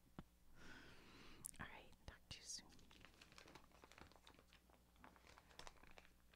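Near silence: a faint whisper in the first two seconds, then scattered small, soft clicks.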